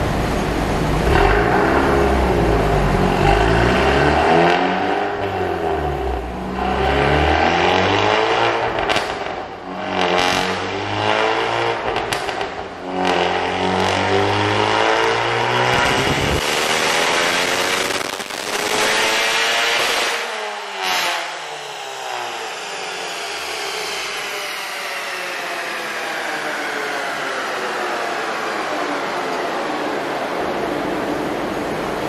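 The 2018 Honda Civic Type R's turbocharged 2.0-litre four-cylinder, breathing through an aftermarket PRL downpipe and front pipe, is run hard on a chassis dyno during a power pull, its note rising and falling several times. In the last ten seconds there is a long, steadily falling whine as the car's wheels and the dyno rollers coast down.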